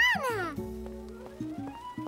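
A toddler's high, rising-and-falling squeal of delight at the very start, then cartoon background music with held notes and a slowly rising tone.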